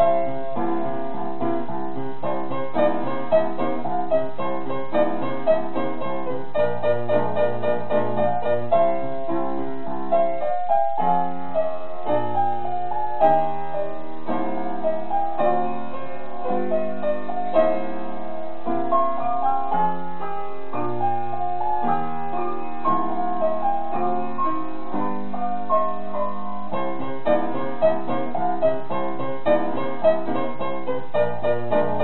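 Upright piano played four hands by two young pianists: a continuous piece of steady running notes, with a brief break and a change of passage about eleven seconds in.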